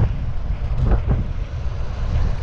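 Heavy wind buffeting on the microphone with road rumble from an E-Twow electric scooter ridden fast, with a couple of short sharper gusts about a second in.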